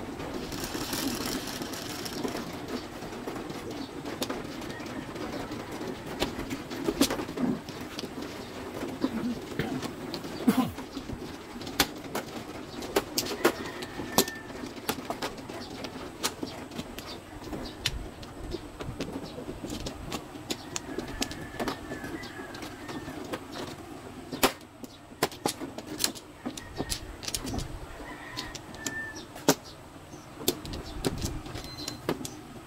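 Plastic mahjong tiles clicking against each other and the table as they are drawn from the wall and set down, in irregular single clicks over a steady low hum.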